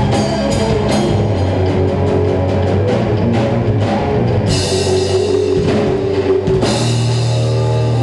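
Live rock band playing loud, with drum kit and electric guitar. Quick, steady drum hits drive the first half, and crash cymbals wash in about four and a half seconds in and again near the end.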